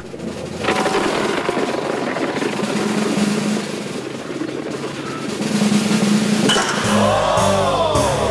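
A rapid snare drum roll in the soundtrack music, building suspense. Near the end it gives way to a drawn-out pitched sound that rises and then falls.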